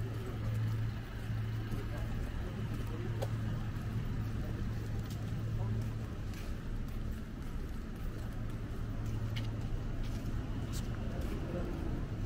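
City street ambience: a steady low drone of road traffic, with occasional faint clicks of footsteps on the pavement.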